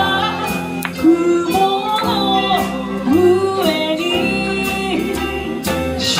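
Live band of plucked tatami-built shamisen-style string instruments and a bass playing a steady accompaniment, with a woman singing the melody over it.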